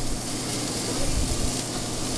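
Steady sizzling hiss of food frying in pans on a commercial gas range.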